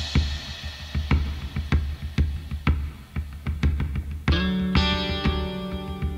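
Live pop-rock band playing a song's instrumental intro: kit drums keep a steady beat of about two hits a second under electric guitar, and a sustained full chord comes in about four seconds in.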